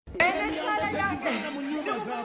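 Speech: a woman talking over other voices, beginning just after a brief dropout at an edit.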